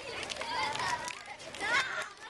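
A crowd of children talking and calling out over one another, with a louder high-pitched child's shout about three-quarters of the way through.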